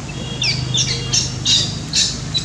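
Baby macaque squealing in distress: a run of about five short, shrill cries, one every third of a second, getting louder toward the end.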